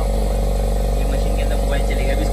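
Steady electric machine drone with a strong low hum from phone-screen refurbishing machines running: a vacuum screen laminator and an autoclave bubble-remover that presses out air between glass and display.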